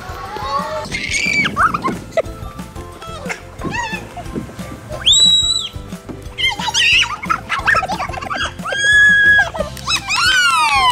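Young children shrieking and squealing in play: a string of short high cries, with longer held squeals around the middle and near the end, over background music.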